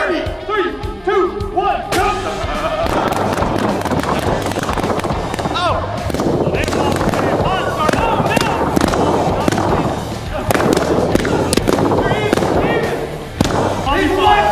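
Balloons popping in a run of sharp bangs and thuds under steady background music and shouting.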